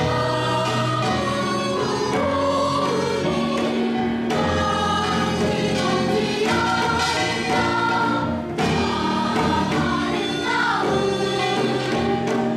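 Children's choir singing a Korean song in chorus, with traditional Korean instrumental accompaniment, steady throughout.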